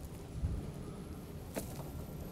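Quiet outdoor ambience with a brief low wind rumble about half a second in, while a knife is drawn down through the soil face of a pit wall, giving faint scraping and a single light click a little past the middle.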